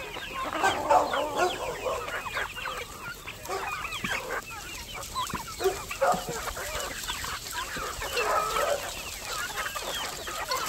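A large flock of chickens clucking and calling, many short calls overlapping without a break.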